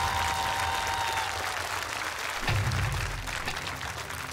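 Audience applauding, with a held synth chord from the show music fading out about a second and a half in.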